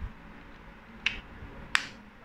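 Two sharp plastic clicks about two-thirds of a second apart, the second louder: a Realme Buds Air earbud charging case being handled and its lid snapping shut.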